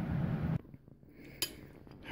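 A single light clink of a metal spoon against a ceramic bowl, about two-thirds of the way through, against a low, quiet room background.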